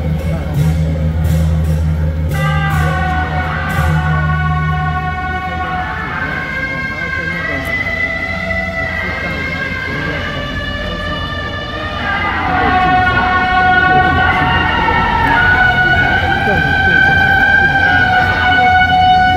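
Beiguan procession music: a suona (Chinese shawm) playing a melody of held, wavering notes, with a few sharp percussion strikes in the first few seconds. A low steady hum sits under the first five seconds.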